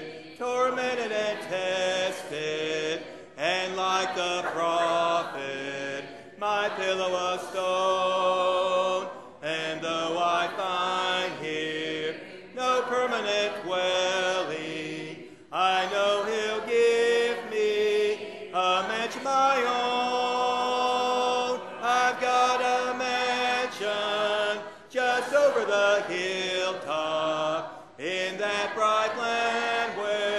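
Church congregation singing a hymn together in several-part harmony, unaccompanied, in phrases of a few seconds with brief breaks between lines.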